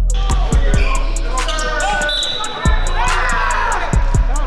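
Basketball game sounds in a gym: the ball bouncing, and players shouting and cheering, loudest near the end, over music with a steady beat.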